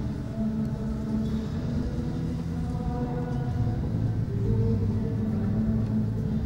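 Slow church music of long held chords that shift every second or so.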